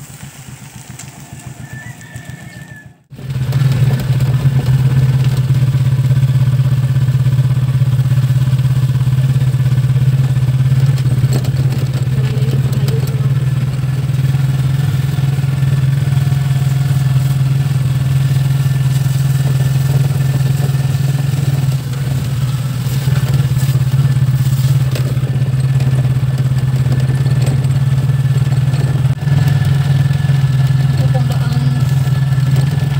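Motorcycle engine of a sidecar tricycle running steadily on the move, heard from in the sidecar as a loud, even low drone. It starts about three seconds in, after a brief dropout that ends a quieter stretch.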